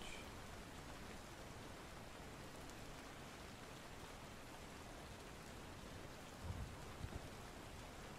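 Faint, steady rain falling, an ambient rain bed, with a brief low rumble about six and a half seconds in.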